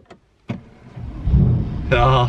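Mercedes-Benz CLS 63 AMG's twin-turbo V8 starting, heard from inside the cabin: a short click, then the engine catching about a second in and flaring up with a low-pitched swell that settles into running.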